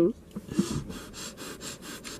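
A person laughing: a brief voiced laugh, then a run of quick, breathy, near-silent laughing breaths, about four or five a second.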